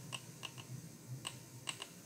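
Faint, uneven ticks and taps of a stylus tip on a tablet screen while a word is handwritten, about five a second.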